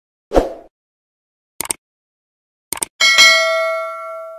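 Subscribe-button animation sound effect: a low thump, then two quick double clicks like mouse clicks about a second apart, then a bright notification-bell ding about three seconds in that rings on and fades.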